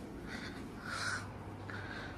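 Three short, hoarse calls, each with a clear pitch, repeated about half a second to a second apart over a steady low hum.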